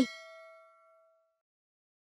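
A single bright metallic ding that rings out and fades away over about a second and a half.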